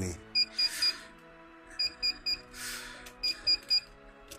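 Banknote counting machine's counterfeit-detection alarm beeping in sets of three short, high beeps, repeating about every second and a half, with brief bursts of mechanical whirring between the sets. The alarm signals that the machine has flagged the note fed into it as counterfeit.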